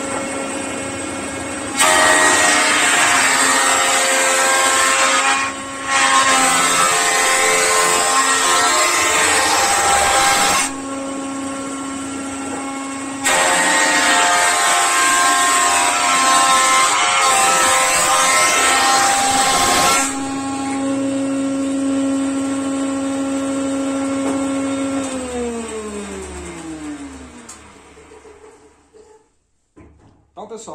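Electric jointer running, its cutterhead loudly planing a wooden plank in three stretches of cutting as the board is fed across, to flatten and square its face. Between passes the motor hums on its own. Near the end it is switched off, and the hum falls in pitch as the cutterhead winds down to a stop.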